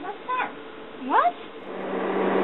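Short vocal sounds, each sliding up in pitch: two quick ones at the start and a longer one about a second in, after a click. A steady low hum starts near the end.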